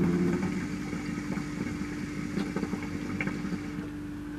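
Hookah bubbling steadily as smoke is drawn through a glass hose and mouthpiece, the water in the base gurgling without a break.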